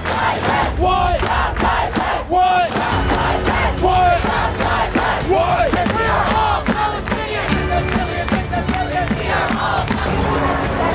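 A large crowd chanting a short slogan in unison, call-and-response style, one shouted phrase about every one and a half seconds, with a plastic bucket drummed along as a beat.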